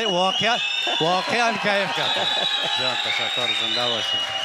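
A man speaking continuously, with a thin, nearly steady high tone held faintly behind the voice.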